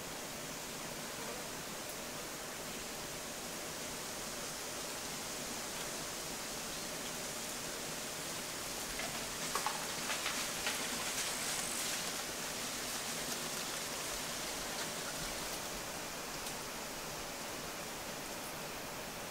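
Steady outdoor field ambience, an even hiss with no distinct source. About halfway through comes a short patch of rapid, high clicking.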